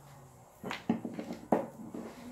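Three light knocks of kitchen items being handled and set down, in the second half.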